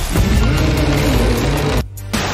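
Loud film-trailer sound-effect mix: a low rumble whose pitch slowly rises and then falls, over dense noise, cut off suddenly near the end.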